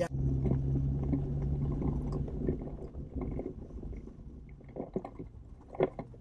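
Vehicle engine and drivetrain heard from inside the cab as it pulls away, a steady low hum that eases off after about two seconds.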